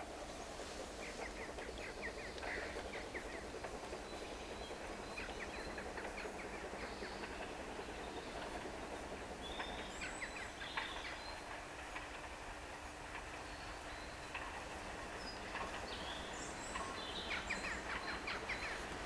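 Small birds chirping and singing, over a low steady rumble from a steam train approaching in the distance.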